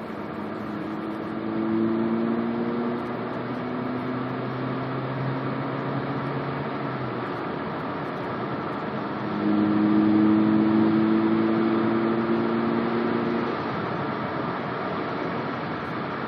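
A 2010 Mazda3's 2.0-litre four-cylinder engine, fitted with a Simota carbon-fibre short-ram intake, heard from inside the cabin under hard acceleration twice: the engine note climbs and grows louder for about five seconds, eases off, then climbs again for about four seconds before settling back to steady road noise a few seconds before the end.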